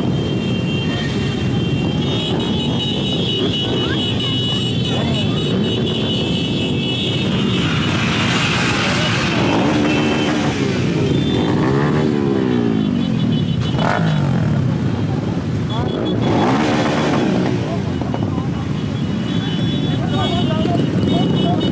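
A large crowd of motorcycles and scooters running together, with several engines revving up and down, most plainly near the middle, over voices in the crowd.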